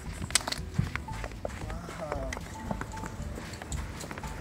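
Footsteps in snow: a person and a small dog walking, with a series of irregular sharp steps, several close together in the first second. Faint music sounds underneath.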